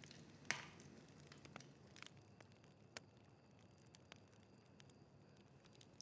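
Near silence with a few faint, scattered crackles from a wood fire burning in an open fireplace, the loudest about half a second in.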